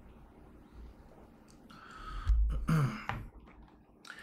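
A man clears his throat about two seconds in: a breathy rasp with a low thud under it, then a short grunt that falls in pitch.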